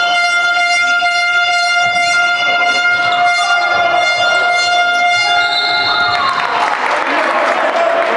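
A horn sounding one steady tone in the gym for about six seconds over crowd noise. When it stops, the crowd noise swells.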